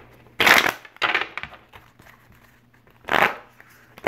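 Deck of tarot cards being shuffled by hand: three short rustling bursts of cards sliding against each other, about half a second in, just after a second in, and again about three seconds in.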